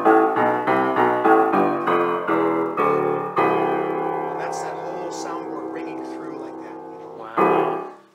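Grand piano played in the lower register: a quick run of struck notes, then a chord about three and a half seconds in that is left to ring and slowly fade through the soundboard. Another chord is struck near the end and cuts off.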